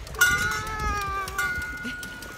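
A toddler's long, high-pitched squeal that starts suddenly and trails off slowly, dropping a little in pitch.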